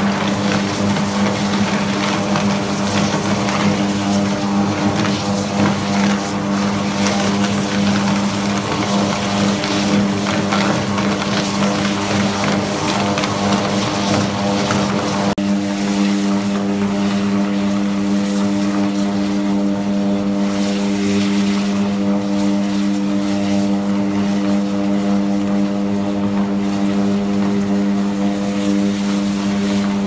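Electric arc furnace arcing on UHP graphite electrodes: a loud, steady electrical hum with a dense crackle over it. About halfway through the crackle drops abruptly and the hum carries on cleaner and steadier.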